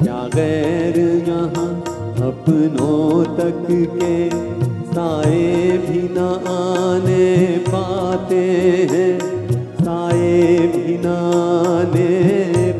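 A male singer performing a Hindi film song live with a band, his voice carried over keyboard and a steady drum beat.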